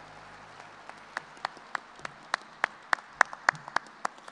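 Sparse applause: sharp hand claps start about a second in, coming about three a second, over faint scattered clapping.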